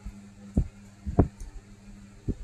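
Two dull knocks, the second louder, from hands working on the plastic RC crane model on the workbench during soldering, over a steady low electrical hum.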